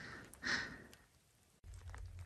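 A single short breath or sigh from the person filming, about half a second in, over faint outdoor background noise. The sound then drops out to dead silence for about half a second, and a low steady rumble comes in near the end.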